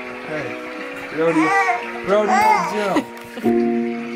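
A baby squealing and babbling in a few high, rising-and-falling calls about a second and two seconds in, over steady background music.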